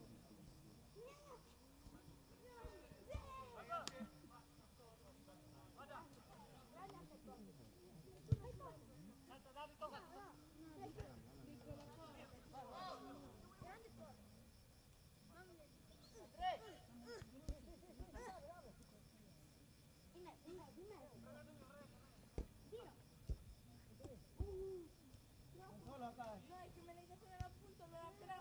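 Faint, distant voices of players calling out across a football pitch, with a few short sharp knocks scattered through, the loudest about eight seconds in.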